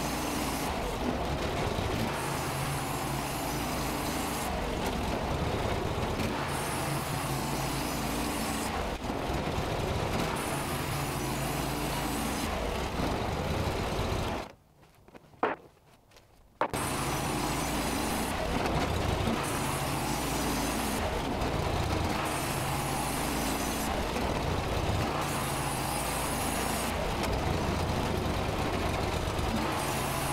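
Norwood LumberMate 2000 portable band sawmill running, its gas engine steady as the band blade saws boards off a white oak cant. The sound drops abruptly to near silence for about two seconds halfway through, then resumes.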